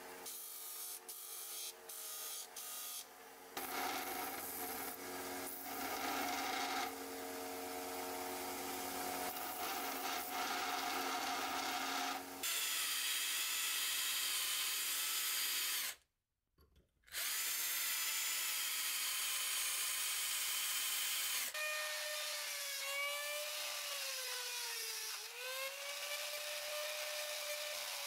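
A run of workshop power tools on a small steel knife blank: a disc sander grinding with brief breaks in contact, then a belt grinder, then a drill boring into the blank. The cuts are separated by a short silence about two-thirds through, and near the end the motor's whine dips in pitch as the tool loads and then recovers.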